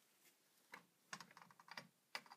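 Faint, irregular small clicks and taps from a hand handling a wooden door and its frame, starting a little under a second in.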